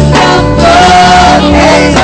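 Gospel worship music: singing over a sustained instrumental accompaniment, with one long held note about half a second in.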